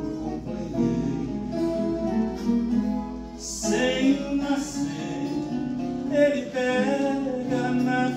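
Viola caipira and acoustic guitar playing together, plucked notes and chords of a slow Brazilian country song.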